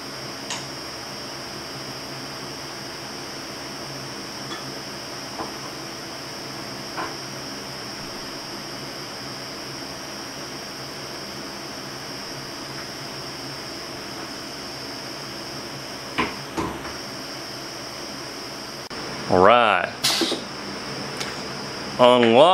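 Pneumatic soft-plastic injection machine running a shot: a steady hum with a thin high whine and a few light clicks and knocks as the injector cylinders draw hot liquid plastic and press it into the mold. Near the end, after a short break, a louder pitched sound wavers up and down for about a second.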